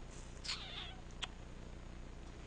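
A marker squeaks once in a short stroke that falls in pitch about half a second in. A single sharp tap follows just after a second in.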